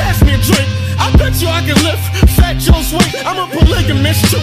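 Hip hop track: a rapped vocal over a beat with drum hits and a sustained bass line.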